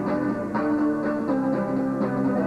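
Steel-string acoustic guitar strummed in a steady rhythm, its chords ringing between strokes.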